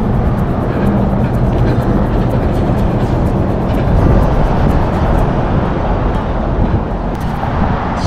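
Steady low rumble of a car's engine and tyres, heard from inside the cabin as the car moves slowly.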